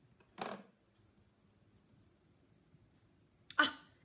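A woman's short breathy exclamation, "ah", about half a second in, then near silence, and the start of a spoken "oh" near the end.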